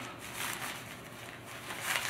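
Rustling of the over-skirt's fabric as it is handled and its waist cord pulled: two soft swells, the first about half a second in and the second near the end.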